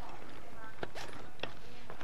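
A few light clicks and handling noises from a nylon webbing strap being pulled across a pack and worked around its buckle, over a steady background hiss.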